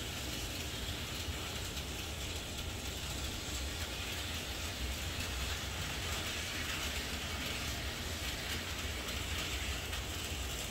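N scale model train running on its track: a steady small-motor whir with fine, rapid clicking of the wheels over the rails.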